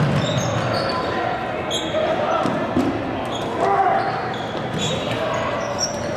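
Dodgeballs bouncing and smacking on a hardwood gym floor, with short high sneaker squeaks among them, all echoing in a large hall.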